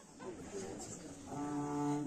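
Low murmur from the hall, then a bowed string ensemble of violins and double bass begins with sustained held notes about a second and a half in.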